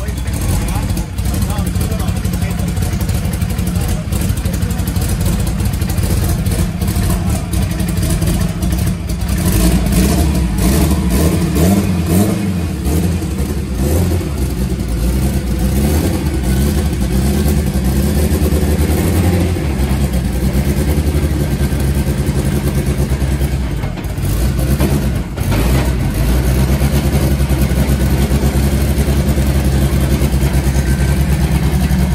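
Engine of a 4x4 drag-racing VW Gol running at idle in a steady, loud beat, its revs swelling a little a couple of times partway through.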